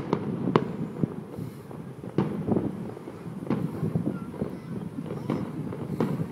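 Fireworks going off in the distance: a string of sharp bangs at irregular intervals, about eight in all, two of them close together right at the start.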